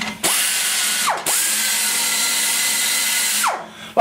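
Pneumatic die grinder porting the exhaust port of a cast iron small-block Chevy cylinder head, shaping the cloverleaf: a high air-tool whine with hiss that spools up, drops and picks up again about a second in, runs steady, then winds down near the end.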